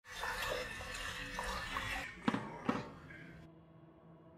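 Water poured from a glass carafe into a gooseneck electric kettle, the pour stopping about two seconds in. Two sharp knocks follow about half a second apart, then the sound fades to quiet room tone.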